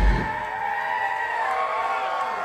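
A live deathcore band ends a song: the drums and heavy low end cut off just after the start, leaving held high notes ringing out while the crowd begins to yell.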